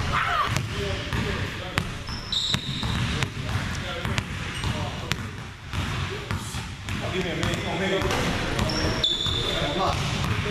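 Basketball bouncing and hitting the hardwood floor of a large gym during play, a string of sharp thuds throughout, with sneakers squeaking briefly about two seconds in and again near the end. Voices carry faintly in the background.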